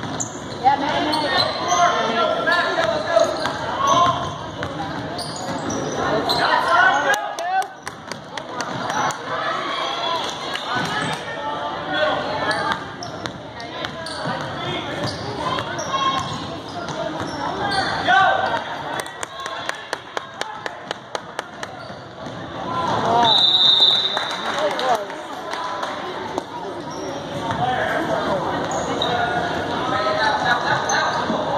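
Basketball dribbled on a hardwood gym floor under the chatter and calls of players and spectators, with runs of quick, even bounces about a quarter and two-thirds of the way in. A short high-pitched tone sounds about three-quarters of the way in.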